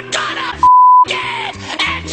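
A censor bleep: one steady, high, pure beep about half a second long, a little past the middle, cutting loudly across music and angry shouting.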